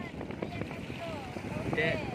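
Steady wind noise on the microphone over open water, with brief talk over it.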